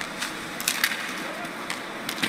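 Ice hockey play with no crowd noise: a low hiss of skates on the ice and several sharp clicks of sticks and puck, bunched about half a second to a second in and one more near the end.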